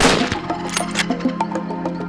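A single rifle shot right at the start, a sharp crack that rings out briefly, over background music.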